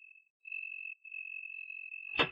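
A cricket trilling steadily at one high pitch, broken briefly twice.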